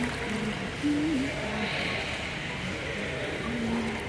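Indoor swimming pool ambience: a steady, echoing wash of water from a swimmer splashing through freestyle strokes, with faint distant voices.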